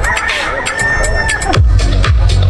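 Electronic dance music with the bass beat dropped out while a long, high, slightly wavering note is held. About one and a half seconds in, a falling sweep brings the kick drum and bass back in.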